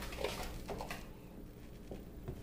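Faint light knocks and scrapes of a wooden spoon stirring in a stainless steel stockpot, mostly in the first second, over a low steady hum.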